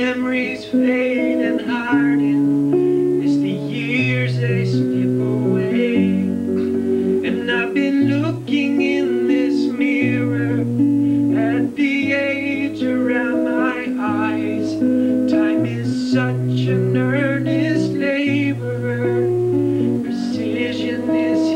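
Acoustic guitar music played live: chords over long held bass notes that change every second or two, with a wavering higher melody line above.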